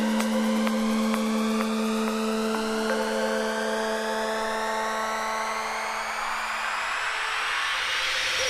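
A rising synth sweep in an electronic dance track: many pitches climb together over a growing hiss, while two held low notes fade out near the end, a build-up in the track.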